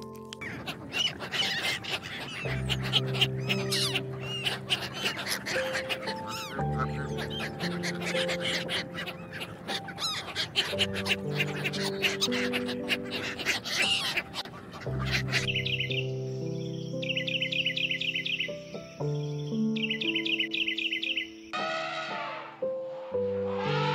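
A flock of flamingos calling in a dense, busy chatter over background music with steady notes. After about fifteen seconds the chatter stops, and three short bursts of high trilling sound over the music.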